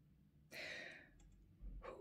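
A woman's soft sigh, a short breath out about half a second in that fades quickly, then a brief intake of breath near the end.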